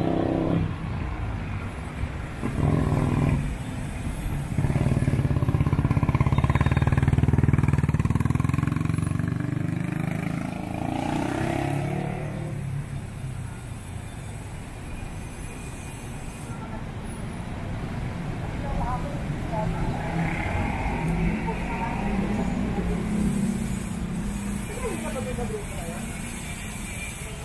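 City street traffic with a motor vehicle's engine passing close by, loudest about five to nine seconds in, over a steady background rumble of traffic. Passersby's voices are heard now and then.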